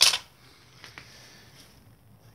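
Mostly quiet room tone, after a short hiss right at the start, with a faint tap about a second in.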